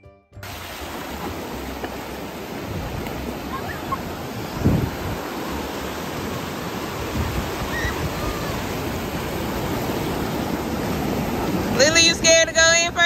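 Ocean surf breaking and washing up the beach, a steady rush of waves with one louder surge nearly five seconds in. Faint distant voices sit under it, and a child's voice starts right at the end.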